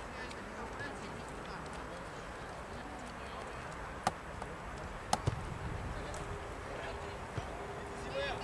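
Outdoor football-pitch ambience with a steady low rumble. A few sharp knocks come around four and five seconds in, the last a low thump as the goalkeeper's goal kick strikes the ball. A faint steady tone sets in near the end.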